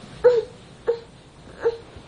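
A dog whimpering: three short whines about two-thirds of a second apart, the first the loudest.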